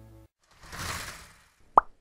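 Intro music fading out. A soft whoosh follows about half a second in, then a single short, sharp pop near the end: animated-title sound effects.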